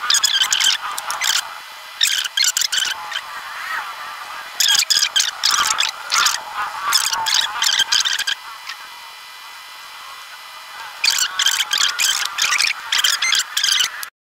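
A metal spoon scraping the soft inside out of fried brown tofu, in runs of quick scratches separated by short pauses.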